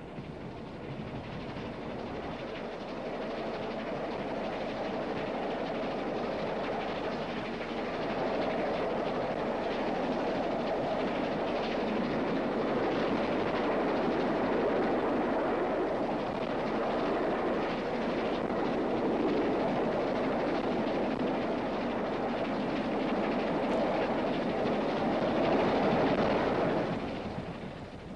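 Steam-hauled express passenger train running at speed: a steady running noise that builds over the first several seconds, holds, and fades away near the end.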